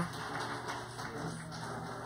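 Faint, steady patter of audience applause, with a low electrical hum beneath it.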